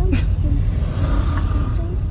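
Low, steady rumble of a car heard from inside its cabin, with brief snatches of voices over it.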